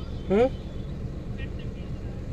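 Outdoor ambient noise: a steady low rumble, with a brief rising-pitched vocal-like call about a third of a second in, the loudest moment.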